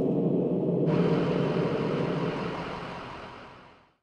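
A low, dense rumbling drone, joined about a second in by a high hiss, the whole fading out to silence near the end.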